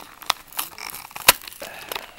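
Plastic blister pack of a diecast toy car crackling and crinkling as it is pried open, with scattered clicks and one sharp snap a little past the middle.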